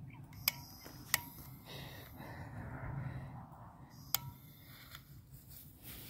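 A small black-powder cannon's fuse burning down toward the charge with a faint hiss, after a few sharp clicks as it is lit near the start; one more click comes about four seconds in.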